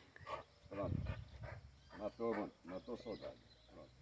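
German Shepherd–wolf cross whining and whimpering faintly in short bouts while jumping up on a man in excited greeting.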